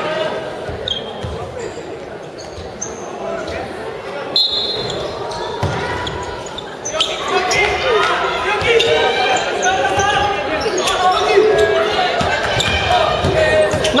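A basketball bouncing on a hardwood gym floor amid players' and bench voices calling and shouting, the voices growing louder and more continuous from about halfway through. The whole is heard in the echo of a large gymnasium.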